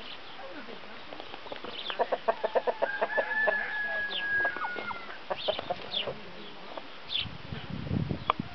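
Chickens clucking: about two seconds in, a fast run of clucks leads into a long drawn-out high call, with short high chirps scattered through. A low rumble follows near the end.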